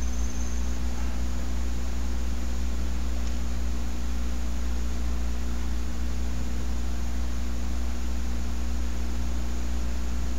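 Steady low hum with an even hiss behind it, unchanging, with no other sound: the background noise of the recording setup.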